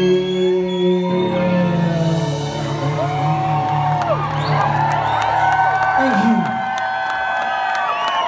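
A live rock band's final chord rings out and fades, while a crowd starts cheering and whooping about halfway through.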